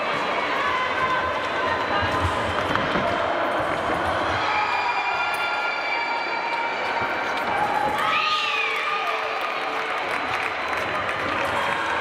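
Hubbub of many voices echoing in a fencing hall, with fencers' feet tapping and stamping on the piste. About eight seconds in, one voice gives a loud call that rises and falls.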